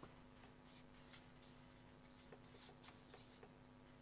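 Faint, irregular short strokes of someone writing on a board, over a faint steady hum.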